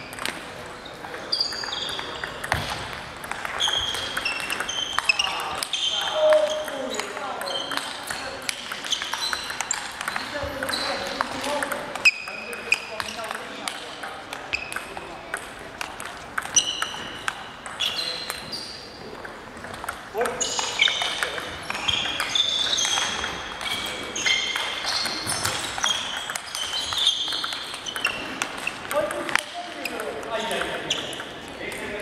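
Table tennis rallies in a large hall: the celluloid ball clicks repeatedly on the table and the bats, with many short high-pitched squeaks and the echo of the hall around them.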